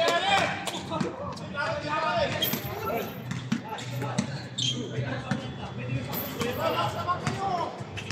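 Basketball bouncing on an outdoor hard court, a series of short thuds, with players shouting to each other.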